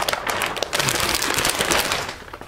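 Thick 4-mil plastic sheeting crinkling and crackling as it is tugged and worked between two hands close to the microphone, in a dense run of sharp crackles.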